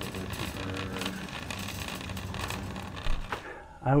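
Warehouse-store ambience: indistinct background voices over a steady low hum, with a sharp click a little over three seconds in.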